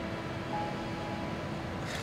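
Steady background hum with a few faint held tones underneath, without speech.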